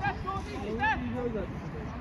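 Indistinct calls and shouts from people at an amateur football match, over a steady low rumble.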